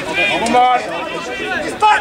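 People's voices calling out and talking on the touchline, loudest in the first second and again just before the end.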